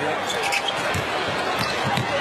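Basketball being dribbled on a hardwood arena court, with steady crowd noise throughout.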